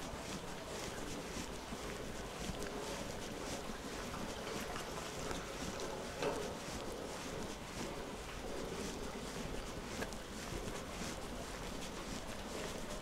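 Footsteps tapping on wet pavement over a steady outdoor hiss, with wind rumbling on the phone's microphone. One louder knock comes a little past the middle.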